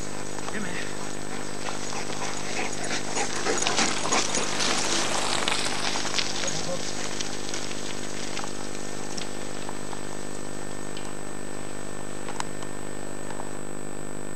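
Mountain bike tyres and a running dog rushing through dry fallen leaves, a rustling crunch with small crackles that swells as they pass, loudest a few seconds in, then fades. Under it runs a steady electrical hum with a thin high whine.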